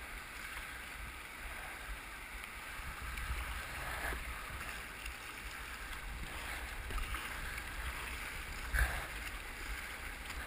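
River rapids rushing steadily around a whitewater kayak as it is paddled downstream, over a low rumble. A few sharper splashing hits come through, the loudest near the end.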